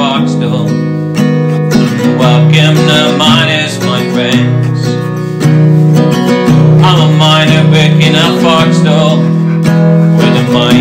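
Folk song with acoustic guitar strumming throughout and a sung melody line over it.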